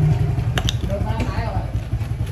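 An engine idling close by, a steady low rumble, with a couple of short clicks just after half a second in.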